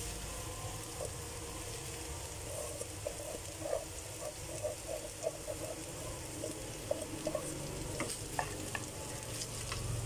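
Cooked rice tipped into a frying pan of scrambled egg and vegetables, sizzling steadily, with light irregular scrapes and taps as the rice is pushed off a steel pot by hand.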